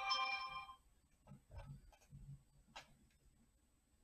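A short, bright chime of several ringing tones at the very start, lasting under a second, followed by a few faint clicks and soft knocks.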